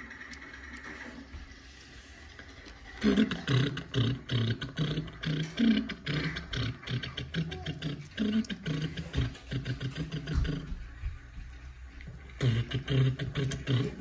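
Small plastic clicks and taps as a sticker is pressed onto a tiny plastic Kinder Joy toy car, under a man's low, wordless voice. The voice starts about three seconds in and stops shortly before the end.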